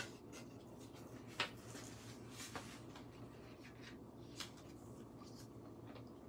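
Paper and cardstock pieces being handled on a work surface: faint rustling with a few light taps.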